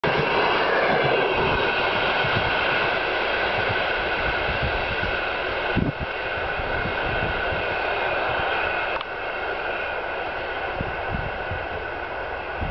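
Passenger train running past at speed and then receding: a steady rolling rumble and rail noise that slowly fades. Sharp knocks come about six seconds in and again about nine seconds in.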